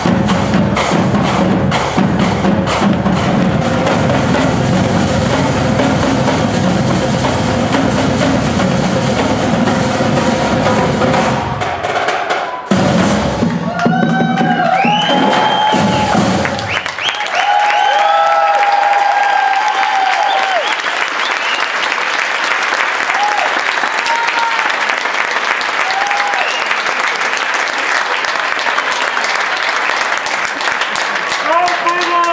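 Percussion ensemble of marimbas, xylophones and drums playing a busy rhythmic piece that ends about twelve seconds in, followed by the audience clapping and cheering with whoops for the rest.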